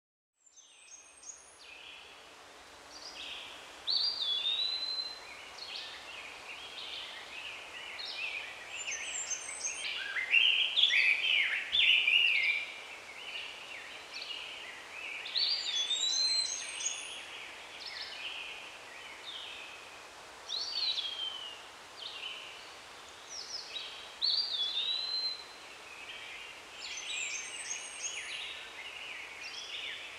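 Several birds singing and calling over a steady background hiss, fading in at the start. One whistled phrase rises and falls and comes back every few seconds among the chirps.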